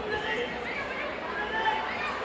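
Boxing arena crowd of many voices talking and calling out at once, with high shouts that rise and fall over a steady hubbub.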